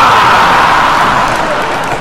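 Concert audience cheering and shouting in one loud burst that dies away over about two seconds.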